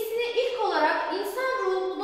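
Only speech: a woman lecturing in Turkish.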